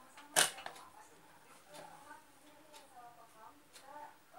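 A single sharp click about half a second in, as a power plug is pushed into a wall socket to supply the air conditioner; the rest is quiet.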